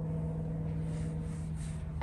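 Steady low hum at one pitch with a rumble underneath, the sound of machinery running in the background.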